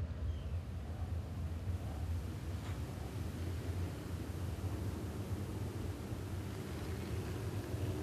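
A pack of dirt-track modified race cars running slowly together on a parade lap, heard as a steady low engine drone without revving.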